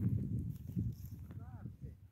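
Low, irregular scuffing and rustling, with a short faint chirp about one and a half seconds in.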